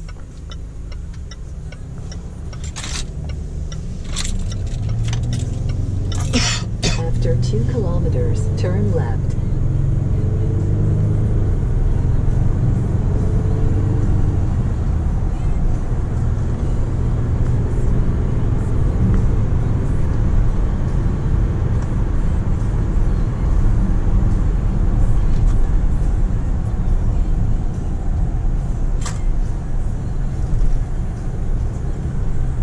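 In-cabin sound of a 2019 Range Rover Sport's 3.0-litre twin-turbo diesel V6 with tyre and road noise as the SUV pulls away from a turn and accelerates. The engine grows louder over the first ten seconds or so, then settles into a steady cruise, with a few sharp clicks in the first part.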